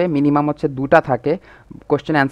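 Only speech: a man narrating in Bengali.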